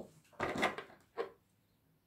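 Two brief, faint rubbing sounds, one about half a second in and a shorter one just after a second: wool yarn being pulled tight through a knitted bauble.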